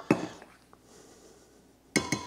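Light clinks of a stainless-steel hand-blender shaft against a glass measuring cup: one at the start, a faint tick in the middle and a sharper one at the end, with quiet between.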